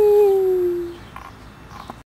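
A baby's long, drawn-out vowel-like vocalization that slowly falls in pitch and stops about a second in, followed by a few faint knocks.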